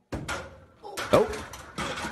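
Loaded barbell and plates crashing as the bar hits the squat rack's J-hook and drops: a sudden clatter at the start that fades quickly, followed by a short spoken 'Oh.'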